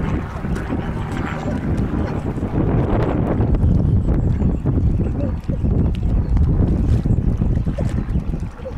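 Wind buffeting the camera microphone: a steady low rumble that grows louder from about two and a half seconds in.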